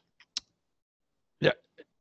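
Mostly quiet, with one short sharp click about a third of a second in, preceded by a fainter tick. Near the end a man says a single short word.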